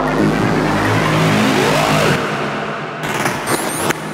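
Psytrance track in a transition: a long noisy whoosh sweeps over the music and the bass drops out about halfway. Near the end, sharp clicks and quick rising high zaps come in before the beat returns.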